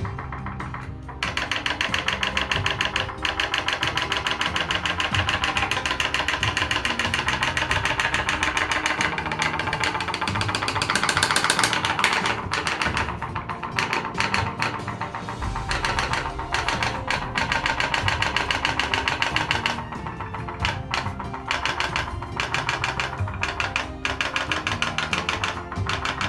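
Background music over a rapid, even ticking: the putt-putt of a candle-heated pop-pop boat's copper-tube steam engine running.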